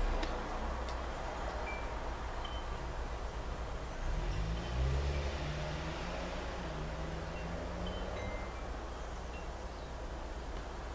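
Faint outdoor ambience with scattered brief high tinkles of wind chimes, and a low hum that rises between about four and eight seconds in.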